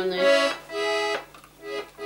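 Russian garmon (button accordion) sounding two held chords in the first second or so, then falling quiet.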